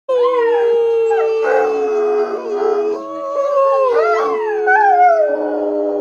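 Dogo Argentino dog howling in long, drawn-out howls that rise and fall in pitch, with several tones overlapping.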